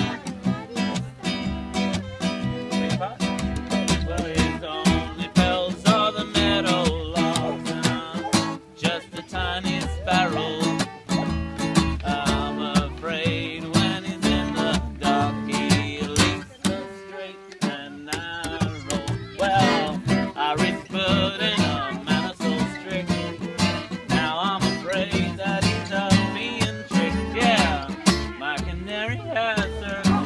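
Small acoustic folk band playing: strummed acoustic guitar, upright double bass and button accordion, with a man singing. The music drops out briefly about seventeen seconds in.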